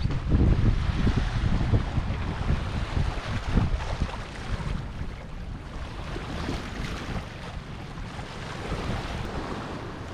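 Wind buffeting the microphone over the rush and slap of choppy water along a sailboat's hull under sail. The gusts are strongest in the first few seconds, then ease to a steadier rush.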